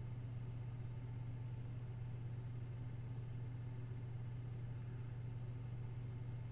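Quiet room tone: a steady low hum with a faint hiss, nothing else happening.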